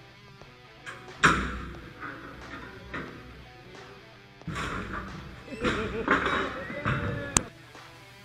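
Halligan bar being driven and pried into a steel forcible-entry door prop: several sharp impacts that ring briefly, the loudest about a second in, over background music.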